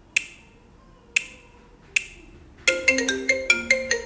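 Smartphone ringtone for an incoming video call: a few sharp ticks about a second apart, then a quick, bright marimba-like melody starts ringing about two and a half seconds in.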